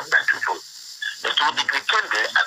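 Speech only: a man talking, with a pause of about half a second around the middle.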